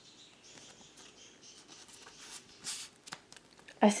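Faint rustling of a Pokémon trading card being handled and put aside, with a short swish about three quarters of the way in and a small click after it.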